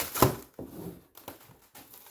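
Putty knife prying the thin skin of a hollow core door off its frame, the old glue letting go: one sharp snap about a quarter second in, then fainter scraping and small ticks.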